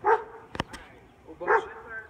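A dog barking twice, short barks about a second and a half apart, with a sharp click between them.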